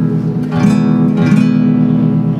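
Classical guitar strummed on an E major seventh chord: struck twice, about half a second and a little over a second in, ringing on between the strums.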